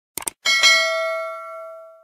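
Subscribe-animation sound effect: a quick double mouse click, then a bright notification-bell ding that rings on in several clear tones and fades away over about a second and a half.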